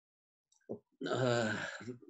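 A man's drawn-out hesitation sound, a steady 'eh' of about a second, starting about halfway in after near silence.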